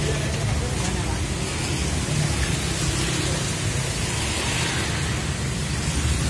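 Steady background hiss with faint voices murmuring underneath.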